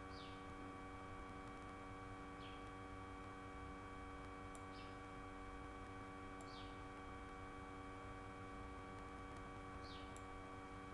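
Faint steady electrical hum made of several steady tones, with faint short falling chirps about every two seconds.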